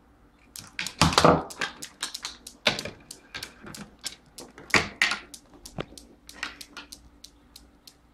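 A rapid, irregular series of clicks, clacks and knocks from a small homemade chain-reaction machine: steel balls striking one another and rattling along bamboo skewers, through a plastic tube and into a bottle cap. The loudest burst of knocks comes about a second in, with scattered lighter clicks after it.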